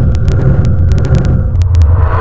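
Loud, steady, deep rumble from the sound design of an animated logo outro sting, with faint scattered clicks high up.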